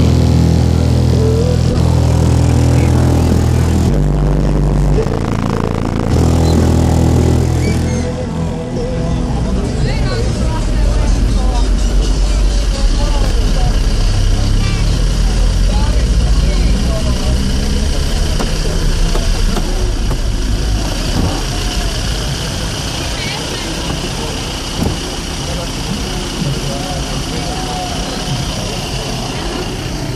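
Sundown Audio car subwoofers playing loud, very deep bass, heard from outside the car. For the first eight seconds or so the bass steps between notes about once a second, then it settles lower and steadier.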